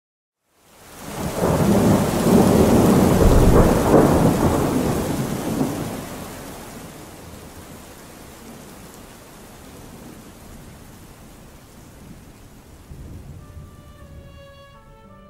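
A long roll of thunder over rain: it swells from silence within the first second or two, is loudest for a few seconds, then dies away, leaving steady rain.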